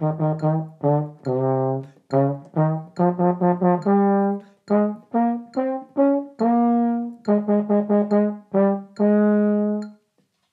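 Baritone horn playing a practice exercise of tongued notes, clusters of quick sixteenth notes between longer notes, ending on a note held about a second.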